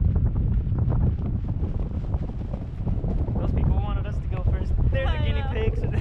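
Wind buffeting the microphone of a camera carried aloft on a parasail, a steady heavy low rumble. A person's voice rings out briefly twice in the second half.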